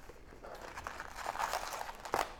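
Wrapped baseball card packs crinkling and rustling as a handful is pulled out of an opened cardboard hobby box, getting louder in the second half.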